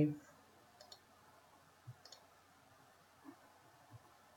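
A few faint computer mouse clicks, short and spaced apart.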